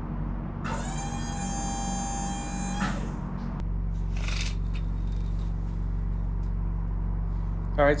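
Wood-Mizer LT40 sawmill's hydraulic pump whining steadily for about two seconds as the rear deck roller is raised under the log, over the mill's steady low engine hum. A brief hiss follows about four seconds in.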